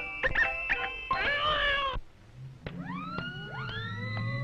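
Early sound-cartoon soundtrack: music with a wavering, cat-like yowl about a second in that cuts off abruptly. After a brief lull, a few sliding tones rise and hold.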